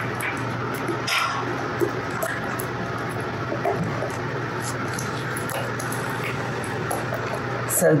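Wooden spoon stirring thick cornbread batter in a ceramic mixing bowl, a steady stirring sound throughout.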